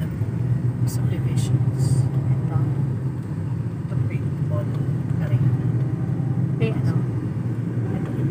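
Steady low rumble of a car's engine and tyres on the road, heard from inside the cabin while driving at an even speed.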